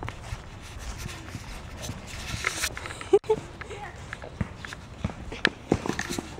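Footsteps and irregular knocks from a handheld camera carried by someone on the move, over a low wind rumble on the microphone, with the sharpest knock about halfway through. Faint voices are in the distance.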